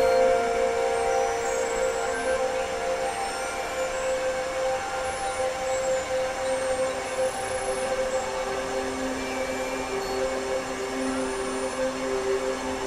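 Electronic synthesizer drone: several held, steady tones over a noisy hiss. A lower tone comes in about halfway through, and a still lower one joins a couple of seconds later.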